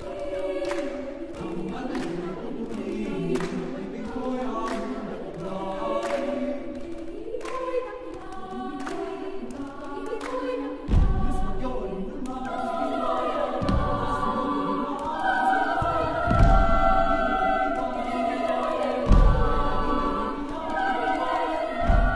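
Mixed children and youth choir singing an unaccompanied psalm setting in many voice parts. In the second half the singing grows louder and fuller, with deep thuds about every three seconds.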